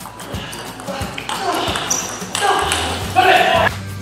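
Table tennis ball clicking off bats and table in a fast rally over background music, with loud voices shouting from about a second in, loudest near the end.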